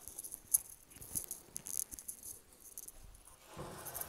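Light wooden clicks and rattles from a pine drawer being handled in its runners, with a sharper click about half a second in.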